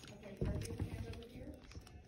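Handling noise as a pumpkin is turned over on a wooden spool stand: a low bump about half a second in, followed by a short run of light clicks and rubbing.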